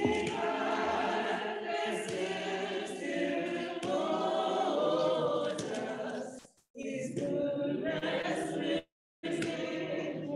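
Congregation singing together unaccompanied, many voices at once. The sound cuts out completely twice for a moment in the second half.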